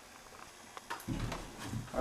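Near quiet for about a second, then a few light clicks and a low rumble as a door is unlatched and pushed open.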